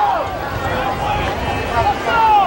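Indistinct voices talking, at a level close to the surrounding commentary.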